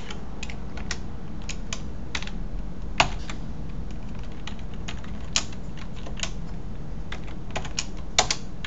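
Computer keyboard typing: scattered, irregular keystroke clicks, one noticeably louder about three seconds in, over a steady low hum.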